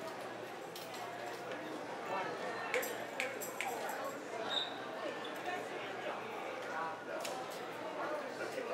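Faint background chatter of voices with a few light clicks and knocks, and one brief high ping about four and a half seconds in; the band is not yet playing.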